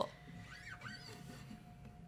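A quiet pause: faint room tone with a steady faint hum, and a couple of soft, brief squeaks about half a second in.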